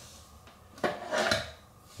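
Hard objects being handled: a sharp click a little under a second in, then a brief clattering rattle.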